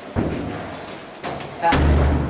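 A few dull thuds and knocks: one shortly after the start, a lighter one past the middle, and a heavier, louder thud near the end, with faint voices behind.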